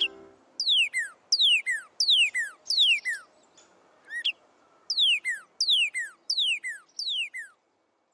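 A songbird singing a run of clear, steeply falling whistled notes, mostly in quick pairs at about one and a half phrases a second, with a short pause in the middle. The song stops shortly before the end.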